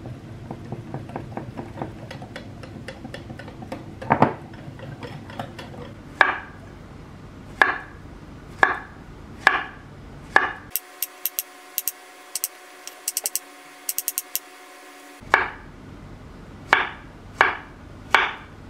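A metal whisk ticking rapidly against a glass mixing bowl as batter is stirred, then a kitchen knife slicing a banana, each cut ending in a sharp knock on a wooden cutting board about once a second. In the middle stretch the knocks give way to quicker, thinner clicks with no low end.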